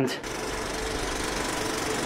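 Old film projector sound effect: a steady, rapid mechanical clatter with hiss and a low hum. It starts just after a man's voice stops, as a vintage-film-style intro begins.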